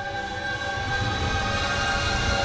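A low rumble that starts and steadily grows louder beneath held musical notes.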